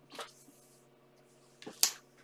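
Cards of a round tea-leaf fortune deck being handled and laid on the table: a soft click just after the start and a single sharp snap near the end, over quiet room hum.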